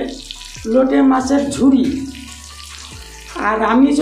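A man singing in long, drawn-out notes with one sweeping rise and fall of pitch. He breaks off for about a second and resumes near the end.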